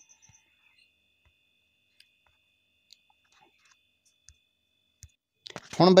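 Near silence with a few faint, scattered clicks and a faint steady high tone that stops about five seconds in; a voice starts just before the end.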